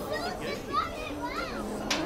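Children's and young people's high-pitched voices, with a few excited squeals that rise and fall. A sharp click comes near the end.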